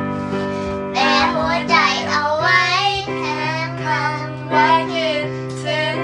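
A girl's voice singing a Thai pop song over a backing track of sustained chords with guitar. For about the first second only the accompaniment plays, then the singing comes in.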